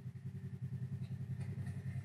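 Side-by-side UTV engine running at low, steady revs with a fast, even pulse as the machine climbs a steep, rutted dirt hillside.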